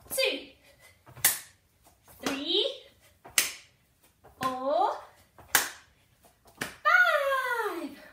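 Sharp hand claps about every two seconds, made overhead at the top of each star jump, with a woman's voice calling out counts in between.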